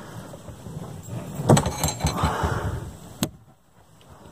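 RV jackknife sofa's metal frame being pulled out into a bed: a clunk about one and a half seconds in, then about a second of metallic rattling and scraping, and a final click a little after three seconds.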